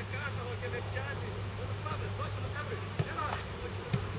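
A football being kicked twice in a passing drill: two short sharp thuds about a second apart near the end, over a man's voice talking and a steady low hum.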